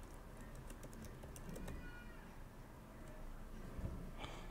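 Typing on a computer keyboard: a quick run of key clicks over the first two seconds or so.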